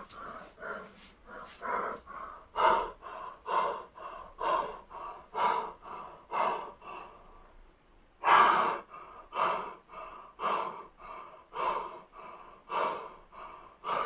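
A man breathing hard after a circuit of exercises, audible breaths about once a second. A louder, longer gasping breath comes a little over halfway through.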